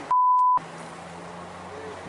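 A censor bleep: one steady, loud electronic tone about half a second long near the start, with the rest of the soundtrack cut out beneath it. A low, steady background hum from the room follows.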